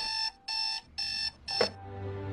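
Digital alarm clock beeping: four short, evenly spaced beeps, about two a second, the last cut short.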